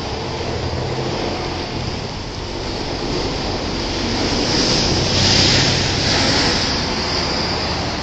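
Street traffic at an intersection: a steady rumble of car engines and tyres, swelling to a louder hiss of tyres about five seconds in as a car passes close.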